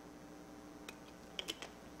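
A few light clicks, one about a second in and a quick group of three around a second and a half, over a faint steady hum.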